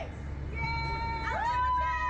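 A woman's high-pitched, drawn-out nervous whine: short sliding cries, then one that rises and is held for under a second past the middle, over a steady low hum.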